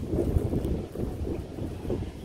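Wind buffeting the camera microphone: a gusty low rumble that swells strongest about a third of a second in.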